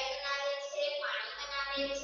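A high voice singing in long held notes.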